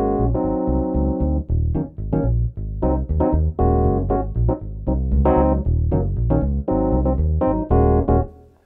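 Kawai DG30 digital piano in split-keyboard mode: an electric bass voice played in the left hand under the bell-like Classic E.Piano electric piano voice in the right, a steady run of bass notes and chords.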